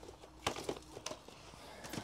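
Plastic DVD and video game cases clacking together as they are shuffled in a plastic storage tub: a few light, separate knocks.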